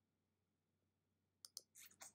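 Near silence, with two faint clicks close together near the end.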